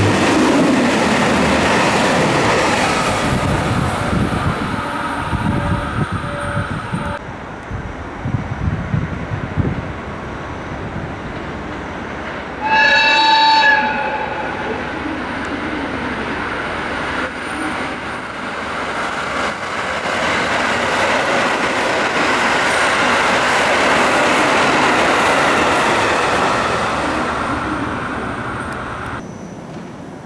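A KiHa 261 series diesel limited express runs through the station at speed, its running noise heavy at first and dying away over several seconds. A train horn sounds once, about a second long, around the middle. Then a 721 series electric train's running noise swells and fades as it passes.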